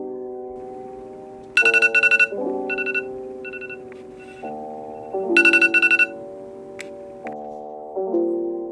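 iPhone timer alarm going off: two loud bursts of rapid, high pulsing beeps, a few seconds apart, with a few softer beeps between them.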